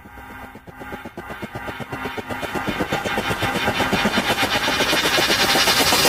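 A dramatic sound-effect riser: a dense, fast-pulsing drone that swells steadily louder throughout and ends in a sudden low hit.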